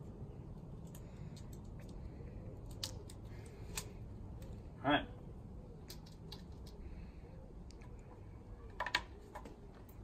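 Faint, scattered clicks and rustles of a plastic number plate and the peel-off backing of its adhesive strips being handled and pressed onto a bumper, over low, steady background noise.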